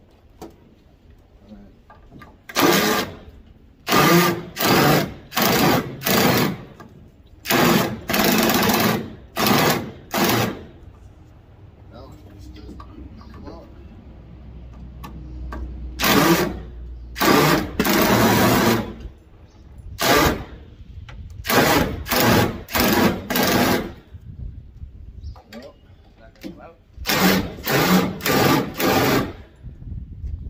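Cordless DeWalt power driver backing screws out of the sheet-metal panels of a central air conditioner's outdoor unit, run in many short bursts of about a second each, in several groups with pauses between.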